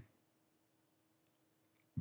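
Near silence, with a faint steady hum and a few very faint clicks about halfway through.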